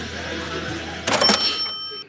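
Low shop background noise, then about a second in a short clatter followed by a bright bell-like ring on several steady tones, like a cash register's ka-ching, which stops abruptly at the end.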